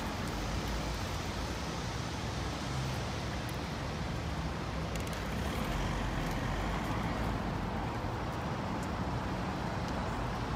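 Steady outdoor street ambience: a low rumble of road traffic with a general urban hiss, getting a little louder about halfway through.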